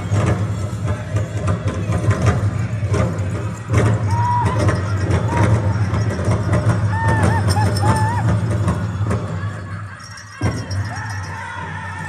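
Powwow drum group drumming and singing, with short wavering high notes in the middle and the jingle of dancers' bells. Near the end the sound drops briefly, then one sharp drum strike and held singing follow.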